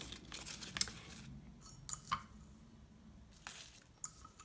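Faint crinkling of a clear plastic sleeve and light clicks of a small plastic spoon against a ceramic teacup as sequin glitter is scooped and poured in, with a pair of sharper clicks about two seconds in.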